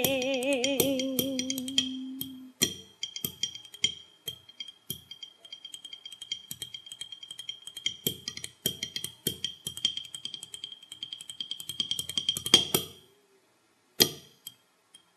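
A female ca trù singer holds the last note of a phrase with a wavering vibrato for about two and a half seconds. Then the phách, a wooden block beaten with sticks, plays alone in quick, irregular strokes and short rolls, stopping about a second before the end.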